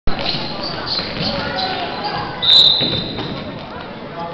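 Basketball bouncing on a gym floor amid spectators' voices in a large echoing hall. About two and a half seconds in comes a loud, steady high-pitched blast, typical of a referee's whistle stopping play.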